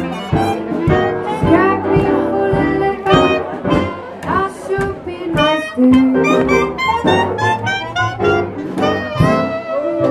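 Live small-band hot jazz: plucked upright double bass and drums keeping the beat, with horns playing the melody.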